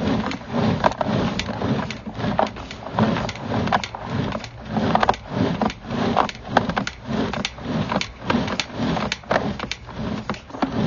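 Sewer inspection camera's push cable being pulled back out of the line and onto its reel: a rhythmic run of clicks and knocks over a low rumble, about two pulls a second.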